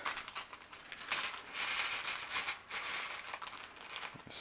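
A thin plastic bag crinkling as it is pulled and torn open by hand, with small hard plastic minifigure accessory pieces clicking and clattering onto a table.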